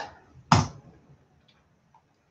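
A single sharp keystroke on a computer keyboard about half a second in, the Enter key pressed to load a typed web address, followed by a faint small click.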